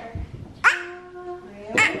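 A baby's voice: a sudden squeal about half a second in that drops quickly in pitch into one steady held "aah" lasting about a second.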